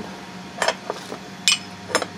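Black aluminium 2020 extrusion rails clinking and knocking against each other and the bench as they are picked up and handled, a handful of short, sharp metallic knocks.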